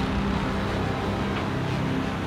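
Steady low drone of a large mining dredge's engines and machinery running at a constant pitch.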